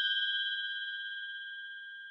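A single bell-like chime rings out and slowly fades away. It is one clear, steady pitch with fainter higher overtones.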